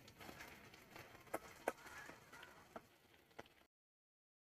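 Near silence with a few faint, sharp clicks of a spoon tapping an aluminium kadai as fried anchovies are turned. The sound cuts out abruptly shortly before the end.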